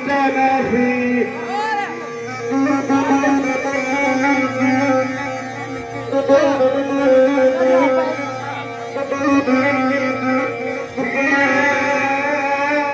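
Live amplified folk music: long held drone notes with a wavering melody line over them, and a man's voice on a microphone.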